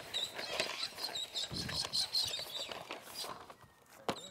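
A coil of flexible plastic horse-fence rail being rolled out over grass, with scattered scuffs and rustles. Birds chirp high and busily in the background.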